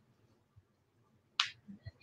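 Near silence, broken about one and a half seconds in by one brief, sharp noise.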